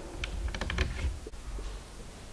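Felt-tip marker writing on a whiteboard: a quick run of short scratchy strokes in the first second, then fainter taps, over a dull low rumble.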